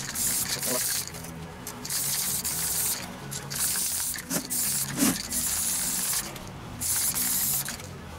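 Repeated short hissing bursts, about six of them, each under a second, over quiet background music.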